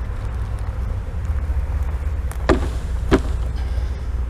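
Two sharp knocks about half a second apart, late on, as a wooden hive frame covered in honey bees is jolted to shake the bees down into a plastic tub, over a steady low rumble.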